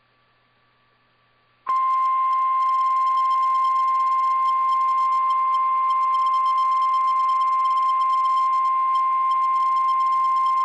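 NOAA Weather Radio 1050 Hz warning alarm tone, sent as a test of the alarm that switches on weather-alert receivers. A single steady high tone starts about two seconds in, after near silence, and holds unchanged to the end.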